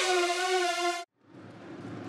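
The final held chord of an electronic broadcast intro jingle, lasting about a second and cutting off abruptly. After a short gap, faint stadium crowd ambience fades in.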